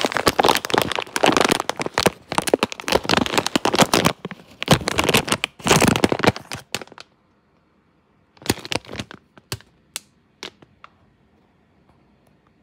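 Clear plastic bag of dried cordyceps flowers crinkling and crackling as it is handled, densely for about seven seconds, then a few scattered crackles.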